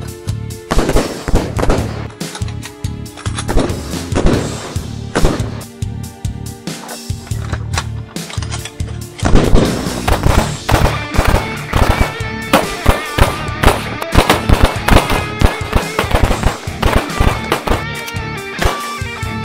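Handgun shots fired in quick strings over loud rock background music with electric guitar.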